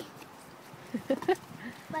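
A young child's brief wordless vocal sounds, a few short ones about a second in and again near the end, over faint outdoor background.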